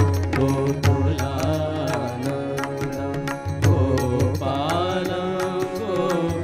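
Indian classical devotional vocal music: a male voice chanting a Krishna mantra, with sliding, ornamented held notes. Beneath it run a steady low drone and a quick, regular percussion beat of several strokes a second.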